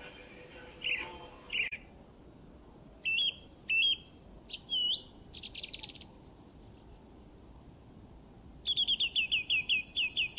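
Birds chirping: scattered short chirps and whistled calls, then a fast run of repeated falling notes near the end.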